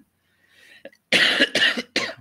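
A man coughing twice in quick succession, loud and rough, after a short pause with a faint intake of breath.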